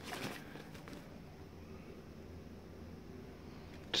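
Faint handling noise of charging cables being moved in a vinyl pouch: a few soft rustles and clicks in the first half-second, then a low steady room hum.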